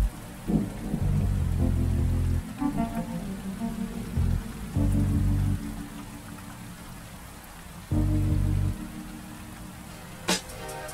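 Steady rain falling, with slow, soft low music notes swelling in and fading out a few times over it.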